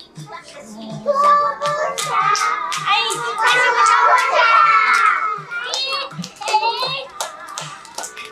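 Children's song with a steady beat playing, with young children's voices singing along and calling out, and hands clapping.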